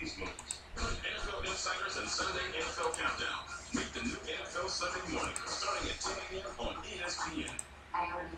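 Indistinct voices talking in the background, quieter than the main narration, with a few computer mouse clicks.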